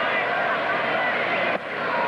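Ballpark crowd noise: a steady din of many voices, with a brief sudden dip about one and a half seconds in.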